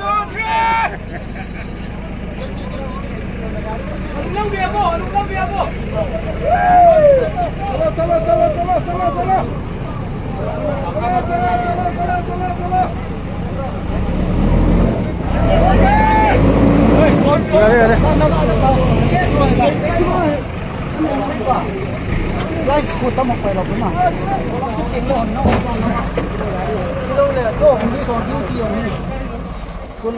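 A Tata truck's diesel engine runs with a steady low rumble that grows louder in the middle as it strains to move the truck. Over it, a crowd of men shout and call out as they push the stuck truck by hand.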